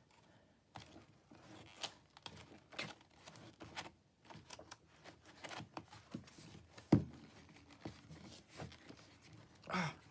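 Pages of a spiral-bound kraft-paper journal being turned and handled: soft, scattered paper rustles and light taps, with one sharp knock about seven seconds in.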